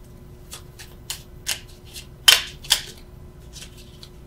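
Tarot cards being handled: a series of short snaps and taps as cards are picked up and the deck is gathered, the two loudest just past halfway.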